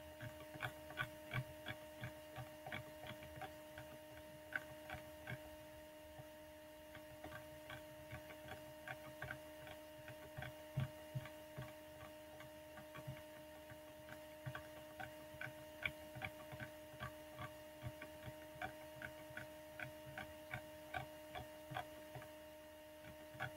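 Computer mouse scroll wheel clicking irregularly, in quick runs of a few clicks, over a steady electrical hum.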